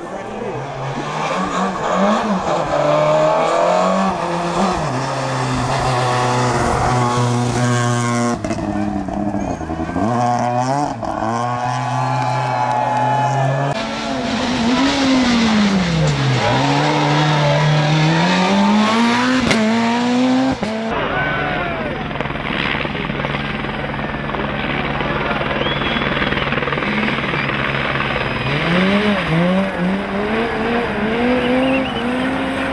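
Rally cars passing one after another through the stage in a series of cuts. Their engines rev hard, with the pitch repeatedly climbing and dropping through gear changes and lifts off the throttle.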